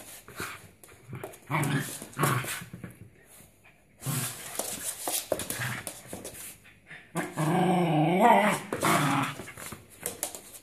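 A dog growling and whining, with scattered knocks and scuffles. The longest and loudest call comes in the second half, wavering in pitch.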